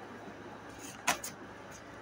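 Tarot cards being shuffled by hand: faint rustling of the deck, with one short sharp snap about a second in.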